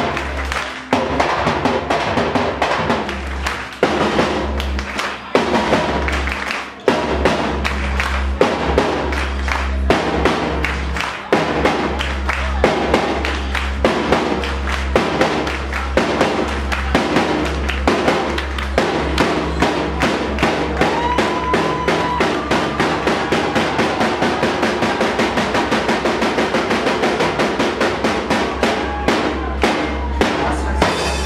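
Drum kit played live with sticks over electronic club music with a heavy, steady bass beat. The drumming is a fast run of snare and cymbal hits, and a wavering melody line comes in about two-thirds of the way through.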